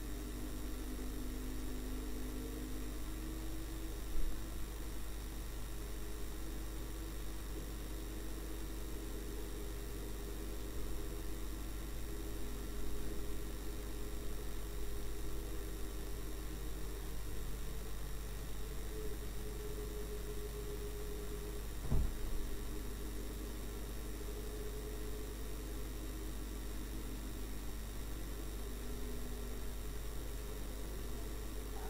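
Steady hum and faint electrical whine of a dashcam recording inside a moving car's cabin, with a low engine drone that shifts slowly in pitch. Two brief knocks, about four seconds in and about twenty-two seconds in.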